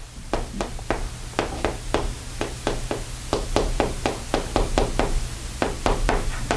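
Chalk tapping on a blackboard as an equation is written out: quick, irregular taps, several a second, over a low steady hum.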